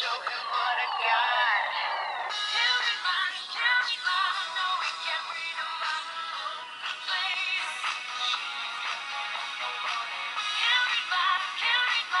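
A demo pop song with singing plays from the CSL Euphoria One DS720 candy-bar phone's built-in speaker. It sounds thin, with no bass.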